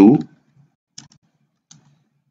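Computer keyboard keystrokes: a couple of quiet clicks about a second in and again near the end, as text is typed.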